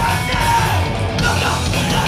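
Hardcore punk band playing live at full volume: distorted electric guitars, bass and fast drums, with shouted vocals over the top.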